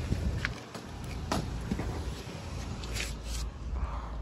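Footsteps on pavement and the handling of a cardboard snack box, with a few scattered soft clicks and rustles over a steady low rumble.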